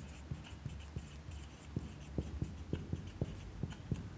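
Marker pen writing on a whiteboard: faint, irregular taps and scratches of the tip against the board.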